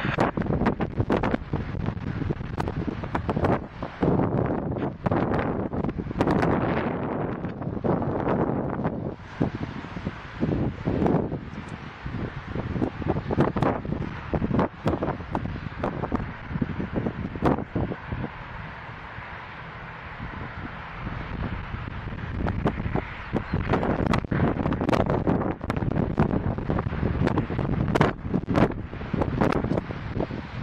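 Wind buffeting the microphone in strong, uneven gusts, easing off for a few seconds past the middle and then picking up again.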